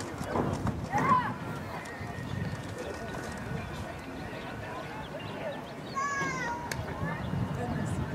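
Voices in the open air around a girls' soccer game: players and spectators talking and calling out indistinctly, with a short call about a second in and another, falling in pitch, about six seconds in.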